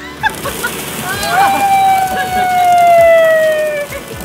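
Thousands of plastic ball-pit balls spill out of an open car door onto concrete in a dense, steady clatter of small hollow impacts. About a second in, a woman lets out a long, loud scream that slowly falls in pitch.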